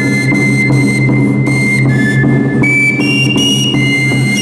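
Andean festival music: a high flute plays a melody in held, whistle-like notes over a regular drum beat.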